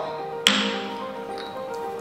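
A single sharp clink of a small ceramic bowl set down on a stone countertop, with a brief ringing tail.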